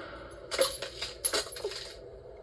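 Cartoon sound effect of brittle ice cracking and tinkling, a few sharp clinks about half a second in and another cluster a little past one second, played through a TV speaker.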